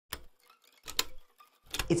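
Three sharp ticking strikes, a bit under a second apart, each with a low thud beneath it. This is trailer sound design over the studio logo.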